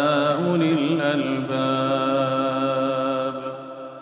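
Melodic Quran recitation by a single voice, holding one long drawn-out note with a brief melodic turn about half a second in, then fading out near the end as the verse closes.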